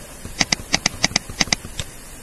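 Computer mouse clicked repeatedly, each click a quick press-and-release pair, about four pairs in under two seconds, used to add time to an on-screen countdown timer.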